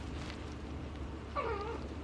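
A young kitten gives one short, high mew about halfway through.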